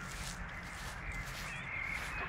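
Outdoor ambience with birds calling, crow-like caws that are most prominent near the end, over a steady low hum.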